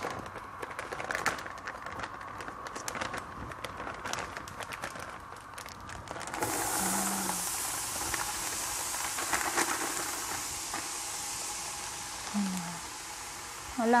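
Frozen mixed vegetables going into hot oil in a pot: scattered clicks and crackles, then a steady sizzle that starts suddenly about six seconds in.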